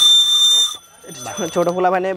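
Small toy whistle from a novelty lollipop blown once: a single loud, steady, high-pitched tone lasting under a second that cuts off abruptly.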